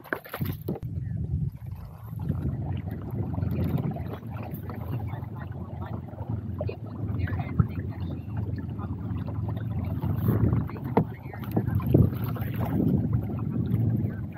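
A kayak being paddled on a lake: water splashing and sloshing at the paddle and hull in irregular strokes, over a steady low rushing noise.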